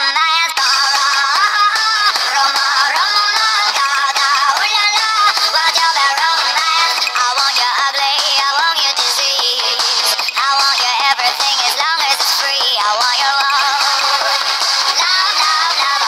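A song: a high-pitched sung voice over backing music.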